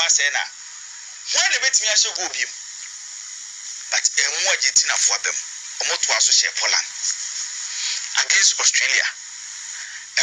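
Only speech: a voice talking in short phrases with pauses, thin and lacking bass like an FM radio broadcast, with a steady hiss between phrases.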